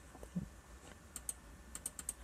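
A few faint, light computer keyboard keystroke clicks, coming in two quick pairs in the second half.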